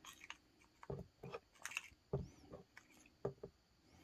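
Faint, irregular small clicks and taps as a copper 5-won coin is handled into a small clear plastic cup of cleaning solution, coin and fingers knocking lightly against the plastic.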